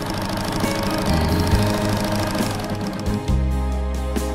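Electric sewing machine running fast as it stitches fabric, heard over background music; the machine noise dies away about three seconds in, leaving the music.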